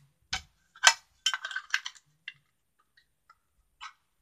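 Small plastic clicks and taps from a little pink plastic toy suitcase being handled in the hands, with a quick run of clicks between about one and two seconds in.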